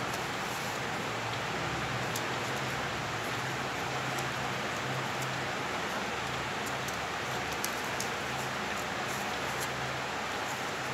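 Steady hiss with a faint low hum, with a few faint ticks and crinkles of white paper being folded and creased by hand.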